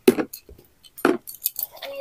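Hard plastic lunch-box containers knocking and clicking together as they are handled, a few sharp clicks.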